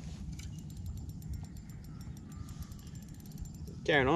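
Fishing reel ticking in a fast run of light clicks while a hooked trevally is fought on light tackle; the ticks thin out around the middle, over a low steady rumble.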